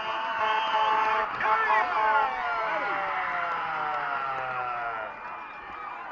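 Football crowd shouting and cheering during a play, many voices at once, falling away about five seconds in.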